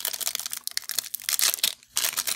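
Foil trading-card pack wrapper being torn open and crinkled in the hands: a dense run of sharp crackles, breaking off briefly just before the end.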